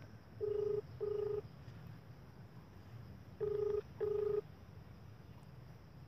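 Ringback tone of an outgoing mobile phone call played over the phone's loudspeaker: two double rings, each a pair of short low beeps, about three seconds apart. The call is ringing and not yet answered.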